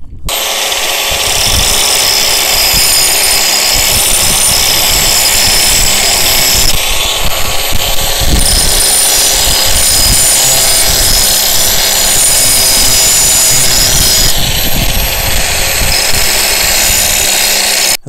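Angle grinder with a thick grinding wheel running at full speed while an axe blade is ground against the wheel: a loud, steady high whine with grinding hiss, starting suddenly at the outset. Its sound changes twice, about seven and about fourteen seconds in.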